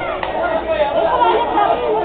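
Spectators at a youth football match talking over one another, several voices overlapping in an indistinct chatter.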